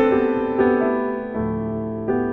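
Improvised solo piano played on a digital keyboard. A chord is struck and left to ring, a few more notes follow, and a low bass note enters about halfway through, all decaying gently.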